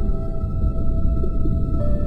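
Slow ambient music: long held notes over a deep, rumbling wash, with a new note coming in near the end.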